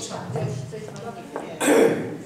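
A single loud cough about one and a half seconds in, over low murmured speech.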